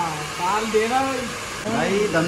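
Hair dryer blowing steadily, with men's voices over it.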